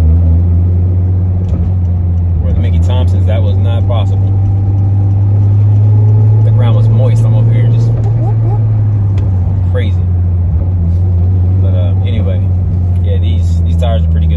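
A car's engine running at a steady cruise, heard from inside the cabin as a low drone with road noise, rising slightly in pitch around the middle and easing back toward the end.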